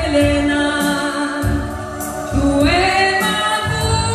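A woman singing into a handheld microphone, holding long notes and sliding up to a higher one about two and a half seconds in, with a low musical accompaniment underneath.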